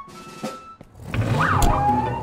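Cartoon soundtrack: background music with a low pulsing beat comes in about a second in, and a sound-effect glide rises and then falls over it. The first second is quieter, with faint held tones.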